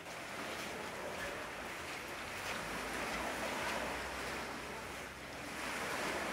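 Small sea waves washing onto a sandy shore, a steady wash of surf that swells and eases gently.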